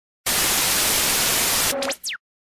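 Television static hiss, a loud even rush of white noise that starts a moment in and stops suddenly near the end, giving way to a brief electronic blip with a quick rising sweep in pitch.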